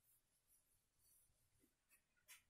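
Near silence, with a few faint soft brushing strokes of a handheld eraser wiping a whiteboard.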